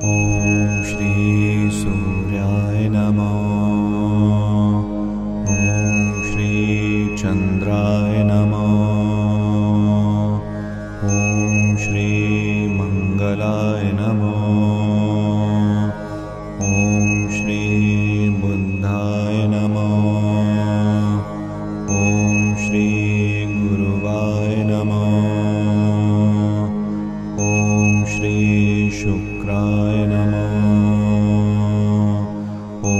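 Chanted Sanskrit mantra over a steady low drone, in repeating lines that restart about every five and a half seconds. A high ringing tone opens each repetition.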